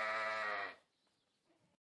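A sheep bleating once: a single call that ends under a second in.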